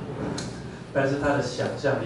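A man speaking, with a brief sharp knock or click about half a second in.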